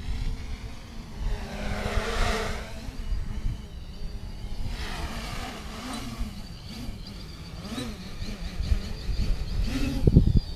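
Small quadcopter's electric motors and propellers buzzing as it flies, the pitch rising and falling with throttle changes, with a louder swell about two seconds in. Low rumble of wind on the microphone runs underneath.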